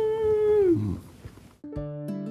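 A woman's long, held 'mmm' hum while tasting food, which falls off in pitch just under a second in. After a short pause, plucked acoustic guitar music starts near the end.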